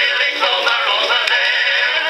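Male lead singer and chorus singing with band accompaniment ("...come back..."), a 1917 acoustic recording played from an Edison Blue Amberol cylinder on a circa 1914 Edison Amberola DX cylinder phonograph. The sound is thin and has a light surface hiss.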